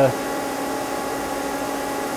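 Steady machine hum of an idling CNC lathe, an even whir with a few fixed tones and no change in level.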